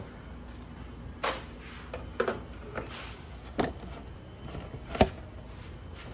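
Hard plastic windscreen being handled and test-fitted against a motorcycle's front fairing: a few scattered light knocks and clicks, the sharpest about five seconds in.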